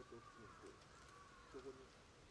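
Faint whistled call of a distant bird: two long arching notes back to back, each rising and then falling, with faint voices underneath.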